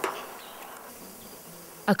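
Quiet background hiss with a faint, steady low buzz that comes in about halfway through.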